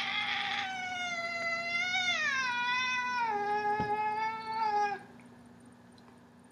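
A domestic cat giving one long, drawn-out meow of about five seconds: it holds a steady pitch, drops a little about two seconds in, then cuts off.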